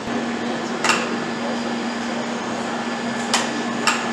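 Workshop background of an assembly line with a steady low machine hum, broken by three sharp metallic knocks, one about a second in and two close together near the end, as metal parts and tools are handled at the assembly station.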